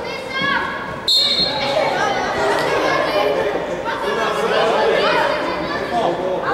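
A referee's whistle blown once, about a second in, stopping play, over shouting voices of players and spectators that echo in a large indoor sports hall.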